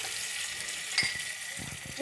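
Hot oil sizzling in a nonstick frying pan, a steady hiss that slowly fades, with a single click about a second in.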